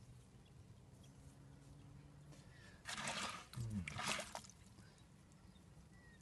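Two short, loud breathy bursts close to the microphone, about three and four seconds in: a person exhaling hard, the second breath carrying a falling voiced sound.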